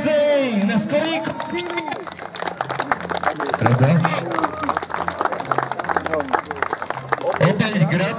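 Audience applauding for several seconds, between stretches of a man's voice at the start and near the end.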